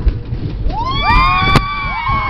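Several ride passengers screaming together, their voices sweeping up from about a third of the way in and holding long high notes, over a steady low rumble; a sharp click near the end.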